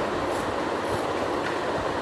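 Steady background noise with a few faint scrapes of a small knife peeling a vegetable.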